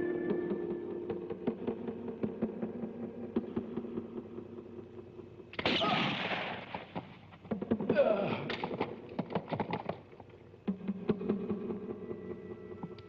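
Film soundtrack: a gunshot cracks out about halfway through, followed a second or so later by a second loud stretch of sharp cracks and noise. Music score fades out at the start and comes back near the end.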